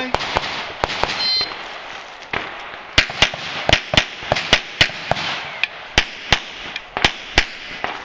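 A short electronic shot-timer beep about a second in, then a string of pistol shots starting about three seconds in, many fired in quick pairs (double taps), with fainter shots before.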